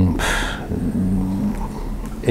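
A man's audible breath, then a short low hum as he hesitates between words.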